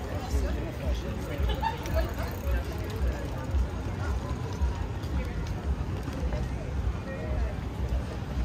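Street ambience on a pedestrian street: scattered voices of passersby, over a low, irregular rumble on the microphone.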